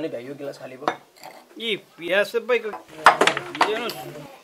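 Steel pots and bowls being handled at a kitchen stove, metal clinking against metal: one clink about a second in, then a quick run of clinks near the end, the loudest part.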